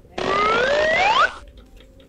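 A rising, whistle-like glide over a hiss, about a second long, that cuts off suddenly: a comedy sound effect added in the edit.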